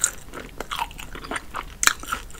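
Close-miked chewing of a mouthful of crispy fried chicken coated in honey and hot sauce: irregular wet crunches of the breading, with a sharp louder crunch at the start and another near the end.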